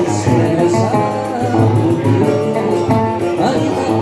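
Live acoustic Brazilian country music: an acoustic guitar and a cavaquinho strumming and picking together, with a man singing over them.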